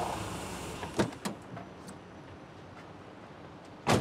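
Quiet street background beside a van that has just stopped, with a couple of light clicks about a second in and a short sharp knock near the end.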